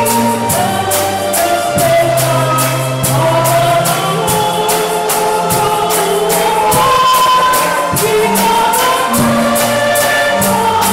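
A church choir singing a gospel song with instrumental accompaniment. A bass line runs under the voices, and a steady high percussion beat keeps time at about three to four strokes a second.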